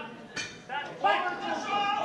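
A single sharp knock about a third of a second in, then people calling out, with no clear words.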